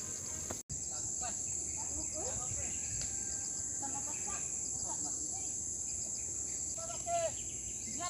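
Steady, high-pitched insect chorus running without a break, with faint distant voices calling now and then, the clearest near the end.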